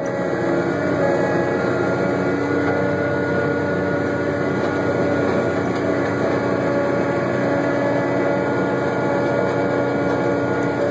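Hagie self-propelled high-clearance applicator running steadily under way: a constant engine drone with a few faint, steady higher whining tones above it.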